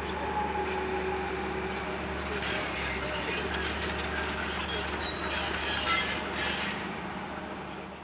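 Outdoor railway-yard ambience: a steady mechanical rumble with a few faint whining tones, fading out near the end.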